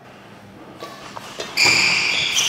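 Badminton shoes squeaking on a synthetic court mat during a doubles rally: a loud, high-pitched squeal sets in about a second and a half in. Before it come a few faint ticks of racket striking shuttlecock on the serve.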